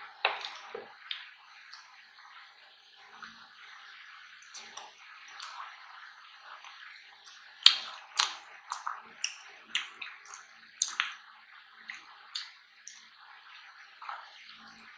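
Close-miked mouth sounds of someone chewing ketchup-dipped fries: soft wet chewing with sharp clicks and smacks, which come thick and fast about halfway through.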